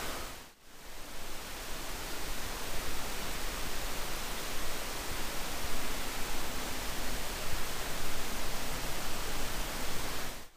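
Steady, even hiss of room tone with no distinct events. It dips briefly to near quiet about half a second in.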